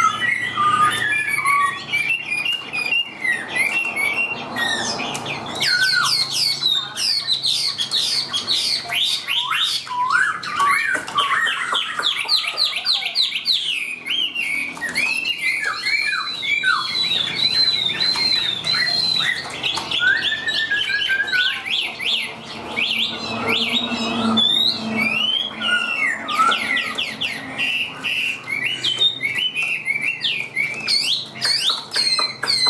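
Chinese hwamei singing a long, unbroken, varied song: fast runs of repeated sweeping notes alternating with whistled phrases, the phrases changing continually.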